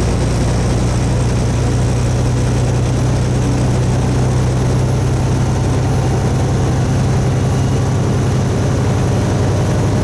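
Semi truck's diesel engine and road noise heard inside the cab while cruising on the highway: a steady low drone that holds the same pitch and level throughout.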